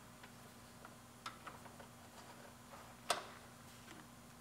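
Quiet room tone with a few faint, small clicks of a wiring connector and wire being handled, the loudest near the end.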